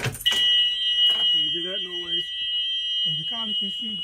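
A school bus cab warning alarm sounds a steady, high-pitched tone that starts just after the ignition key is turned. The starter is locked out because an emergency-exit lock is engaged, so the engine will not crank.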